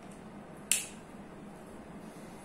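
A single sharp click about two-thirds of a second in, from the plastic whiteboard marker in the hand, over a faint steady low hum in the room.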